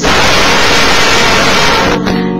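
A small group singing loudly together with an acoustic guitar, so loud that the microphone overloads. The voices break up into a harsh, static-like hiss in which no clear notes stand out.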